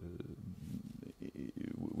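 A man's low, creaky hesitation sounds and breath between phrases, faint and irregular.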